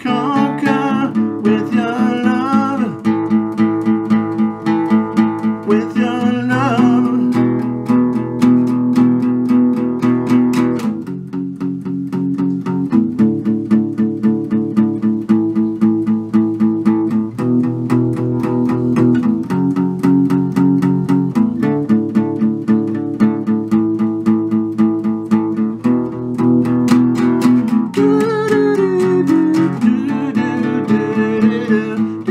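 Acoustic guitar strummed in a steady rhythm through an instrumental passage, with a man's voice singing in the first few seconds and again near the end.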